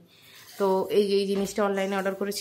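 About half a second of quiet, then a voice holding long notes at a steady pitch, as in singing or drawn-out speech.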